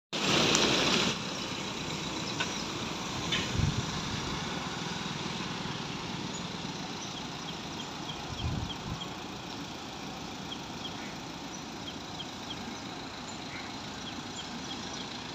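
Street ambience of road traffic: a steady hum of vehicles, with a louder rush in the first second and a couple of brief swells as vehicles pass. Faint high chirps repeat about twice a second through the second half.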